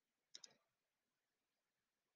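Near silence: room tone, with a faint double click about a third of a second in.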